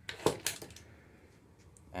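A few sharp plastic clicks and knocks in quick succession from the diving-reel anchor rig on the float tube's mount as the anchor line is let go, then quiet.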